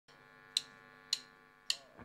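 Drummer's count-in: three sharp drumstick clicks at an even tempo, a little over half a second apart, over a faint steady hum. It is the lead-in to the band's first beat.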